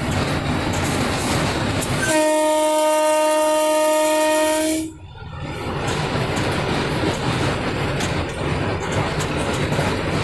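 Electric locomotive at about 100 km/h, heard from inside the cab: a steady running rumble with clatter from the wheels on the rails. About two seconds in, the locomotive's horn sounds once as a loud, steady multi-tone blast, held for about three seconds before cutting off sharply.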